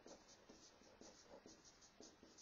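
Faint sound of a marker writing on a whiteboard, a quick series of short strokes.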